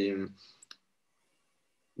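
A man's voice trails off, then two short, faint clicks come close together under a second in, followed by near silence.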